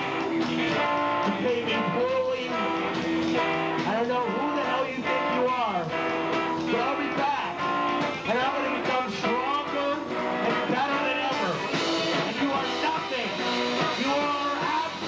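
A rock band playing live, the guitar prominent, with many bending notes.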